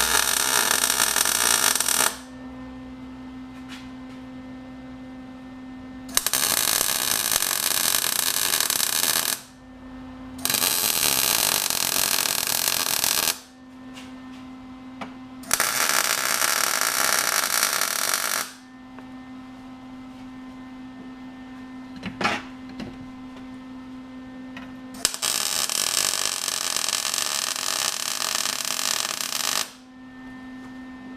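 Small MIG welder striking tack welds on steel plate, kind of outside the welder's range for the thickness: five crackling, sizzling bursts of arc of about three seconds each, with a steady hum in the pauses between them.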